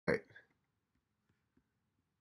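A man's brief, cut-off vocal sound right at the start, dying away within half a second, followed by near silence with a few faint ticks.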